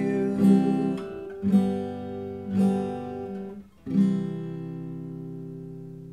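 Acoustic guitar strummed with single downstrokes about a second apart, starting on a C major chord. The last strum is left to ring and fades slowly.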